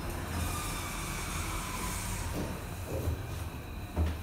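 Machine-room-less passenger lift car travelling down: a steady low rumble with a high hiss of air, ending in a short thump.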